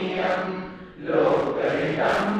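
A man singing a Sanskrit song in a chant-like melody through a microphone, holding long notes, with a short break between lines about a second in.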